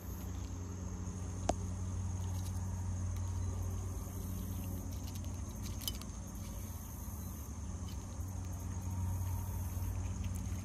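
Outdoor insects trilling in a steady high drone over a low background rumble, with one sharp click about a second and a half in.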